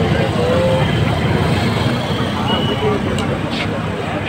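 Steady roadside traffic noise, with motorbikes and cars passing on the road, and faint voices of people in the background.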